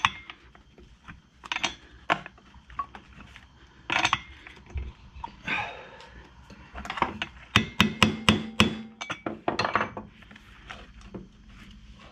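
Hand tools knocking and clicking against metal on a workbench as a screwdriver is worked against a small two-stroke string-trimmer engine and set down. There are scattered single knocks, then a quick run of about ten sharp clicks two thirds of the way through.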